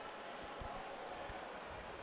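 Faint, steady background noise with no clear source, with a few faint soft knocks.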